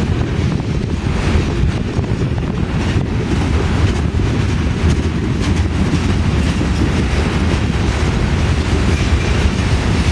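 Freight train of covered hopper cars rolling past close by: a steady, loud rumble of steel wheels on rail, with faint repeated clicks from the wheels passing rail joints.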